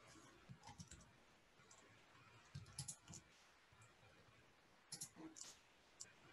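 Faint computer keyboard keystrokes: a few short clusters of clicks, about half a second, three seconds and five seconds in.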